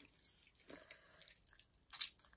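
Faint, scattered wet squelches and small clicks of soft air-hardening clay being squeezed and worked between the hands. The clay is wet with added water.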